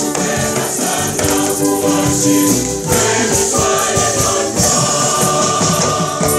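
Church choir singing a Luganda offertory hymn with electric organ accompaniment and rattling hand percussion keeping the beat.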